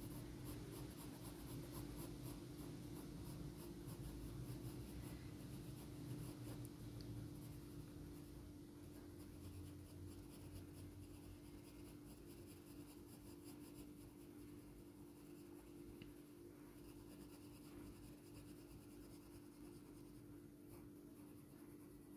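Faint scratching of a 2H graphite pencil on paper in short strokes up and down, laying down shading, a little fainter in the second half. A steady low hum runs underneath.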